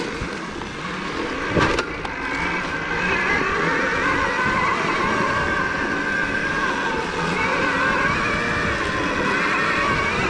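2023 KTM Freeride E-XC electric dirt bike on a dirt singletrack: the electric motor's whine rising and falling with the throttle, over drivetrain and tyre noise. A sharp knock comes a little under two seconds in.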